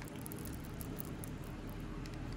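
Faint handling sounds of jewelry on a tray, with soft rustling and light ticks of beads as a three-strand pearl necklace is lifted.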